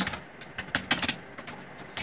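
Typing on a computer keyboard: a run of separate, irregularly spaced key clicks.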